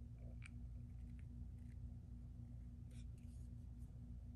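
Faint, sparse small clicks from handling a pump bottle of serum over the hand, over a steady low hum.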